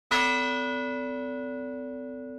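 A single bell-like chime struck once, its ringing tones fading slowly: the opening music sting of a logo animation.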